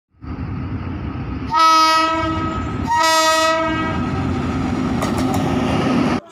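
Electric locomotive's horn sounding two loud blasts, each under a second, over the steady rumble of the approaching train. A few sharp clicks come near the end before the sound cuts off abruptly.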